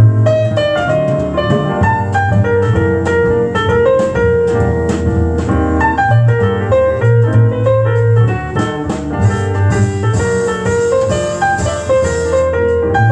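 Jazz piano recording playing over hi-fi loudspeakers: a run of single-note piano lines over a low bass line.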